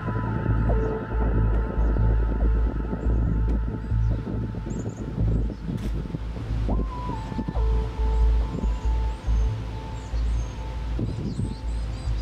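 Music with slow, long-held tones that step to a new pitch twice, over a fluctuating low rumble of wind on the microphone. Short high chirps come in the second half.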